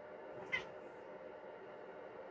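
Long-haired black cat giving one short meow about half a second in, high and falling in pitch.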